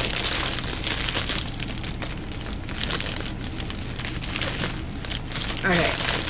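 Clear plastic wrapping crinkling unevenly as it is pulled and worked open by hand.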